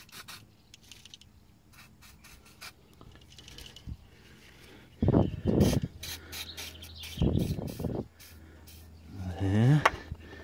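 Aerosol can of WD-40 penetrating oil spraying onto rusty suspension bolts in two hissing bursts of about a second each, about five and seven seconds in, over rubbing and handling noise. A short grunt near the end.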